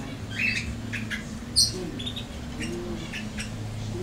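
Caged canaries chirping: many short, high chirps scattered through, with one louder, sharp chirp about one and a half seconds in, over a steady low hum.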